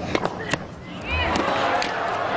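Sharp knocks of a tennis ball being struck and bouncing in a rally, bunched in the first half second with a couple more later. About a second in, a crowd's noise of voices rises in reaction to the point.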